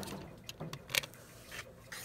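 A few light clicks and taps of a plastic rotary cutter and acrylic quilting ruler being handled and set down on a cutting mat, the loudest about halfway through.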